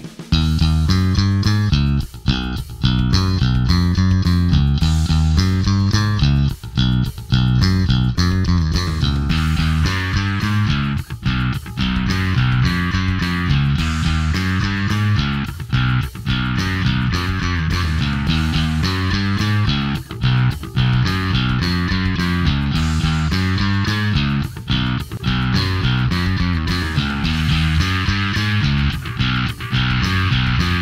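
Sterling by Music Man DarkRay electric bass played fingerstyle in a continuous riff through its onboard Darkglass Alpha distortion circuit at half blend, the gain going from half to full. The tone turns brighter and more distorted about a third of the way in.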